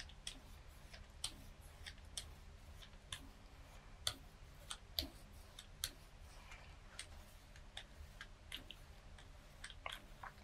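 Faint, irregular small clicks and taps, one or two a second, from a hand tool and paper being worked on a gel printing plate, over a low steady hum.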